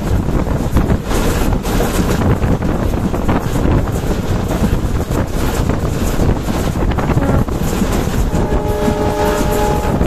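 A diesel-hauled Indian Railways train running, with a continuous loud rumble and heavy wind buffeting on the microphone. Near the end comes a short steady tone of several notes, about a second long.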